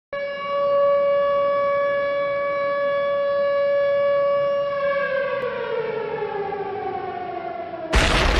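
A siren-like tone: one steady pitched wail held for nearly five seconds, then sliding steadily down in pitch as it winds down.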